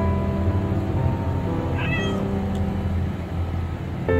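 A kitten gives one short, high meow about two seconds in, over a steady low hum.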